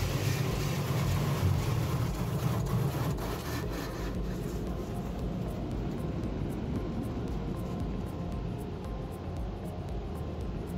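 Car wash water jets spraying onto the car's windshield and body, heard from inside the cabin as a steady rushing hiss. The spray is loudest for the first four seconds, then eases to a quieter steady hiss.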